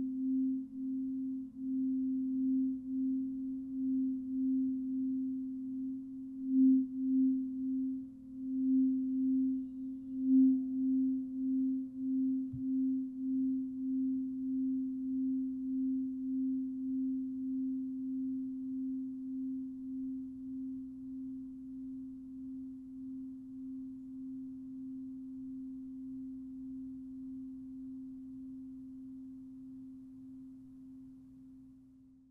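A frosted quartz crystal singing bowl played with a mallet, sounding one deep steady tone with an even wavering pulse. It swells louder twice early on, then rings out and slowly fades once the mallet is lifted.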